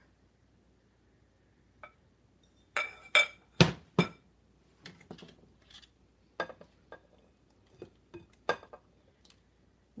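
Kitchen utensils clinking and knocking: a few sharp knocks about three seconds in, then scattered lighter clinks as a metal spoon scoops cooked red beans out of a stainless steel pot.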